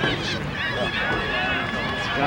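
Several voices shouting and calling over one another during a rugby sevens match, a couple of them holding long calls. A steady low rumble runs underneath.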